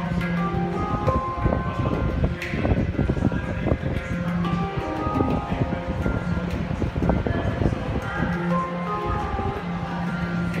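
Handpan played by hand: struck steel notes ringing and overlapping in a flowing improvised melody, with a recurring low note beneath the higher ones.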